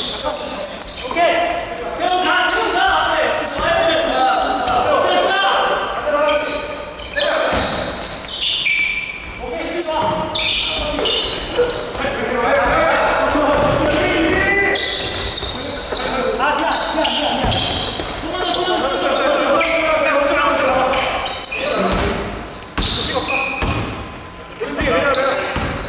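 A basketball dribbled on the hardwood floor of an indoor gym, its bounces coming in short runs, over the voices of players calling out on court.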